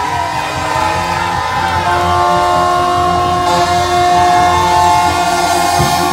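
Live ska band playing: saxophones and brass hold long, sustained notes over bass, drums and guitar, the held horn notes starting about two seconds in.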